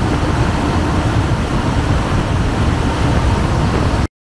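Loud, steady rush of wind and turboprop engine noise heard inside the cargo hold of a C-130H in flight, through its open side door.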